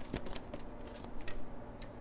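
Tarot cards being handled and drawn from the deck: a few light, short flicks and taps of card stock.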